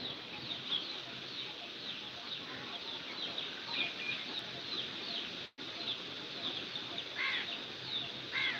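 Birds chirping, with many short high chirps repeating throughout over a steady background hiss, and two louder, lower arched calls near the end. The sound cuts out completely for an instant a little past halfway.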